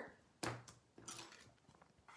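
Clear acrylic stamp positioner being set down and slid into place on a card, giving a faint tap about half a second in and a softer one about a second in.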